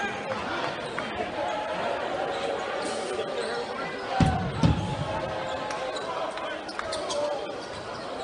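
Echoing arena sound of a live college basketball game: a steady hubbub of crowd voices in the hall, with the ball bouncing on the hardwood court. Two heavy low thumps come a little past halfway.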